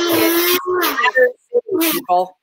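A woman's voice making wordless sounds, one of them held steady for under a second, with a brief hiss near the end.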